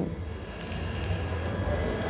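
Low, steady background rumble with no clear pitch, growing a little louder after the first half-second.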